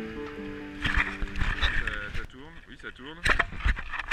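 Background music fading out in the first second, then the onboard sound of a sailing catamaran: gusty wind buffeting the camera microphone, with a voice calling out in the second half.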